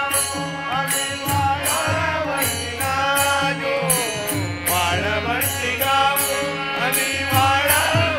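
Men singing a Hindu devotional bhajan with melodic, gliding phrases, over steady held instrumental tones and a regular percussive beat about twice a second.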